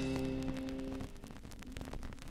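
The band's final chord rings and fades out about a second in, leaving the faint crackle, clicks and hiss of the vinyl record's surface noise.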